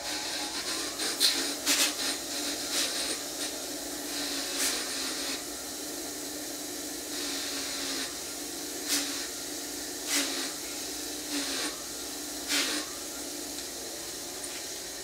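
Bench wire wheel running with a steady hum while a bolt is pressed against it, giving scratchy brushing that swells and eases in irregular strokes about every second or two. The wire wheel is scrubbing white corrosion off outboard head bolts.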